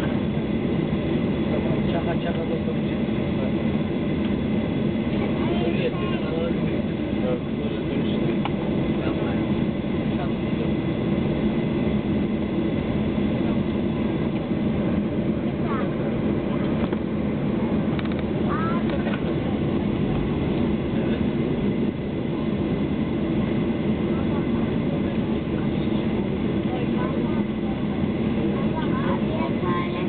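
Steady engine drone of a Boeing 737-800 taxiing, heard from inside the passenger cabin, with the CFM56-7B turbofans' low hum coming through the fuselage.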